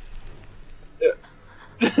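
A brief vocal sound about a second in, then laughter starting near the end.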